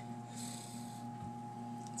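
A steady low electrical-sounding hum with a faint higher tone, and a brief soft hiss within the first second.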